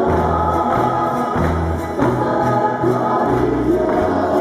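Chilean folk dance music of the cueca kind: several voices singing a melody together over steady low instrumental notes, with a light beat from a tambourine.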